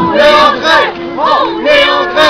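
A group of people chanting loudly together as they march, several voices shouting the same syllables in rough unison.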